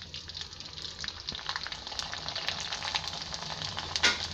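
Rice vadam deep-frying in hot oil, sizzling and crackling as it puffs up. The crackle grows busier about a second and a half in.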